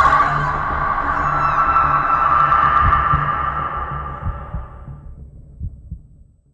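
Film-trailer sound design: a sustained high ringing tone over a low pulsing rumble, both fading away over the last few seconds.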